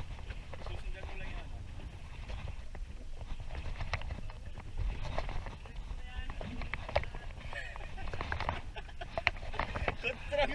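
Wind rumbling on the microphone, with scattered irregular clicks and knocks from hands working a baitcasting rod and reel during a fish fight, and faint voices in the background.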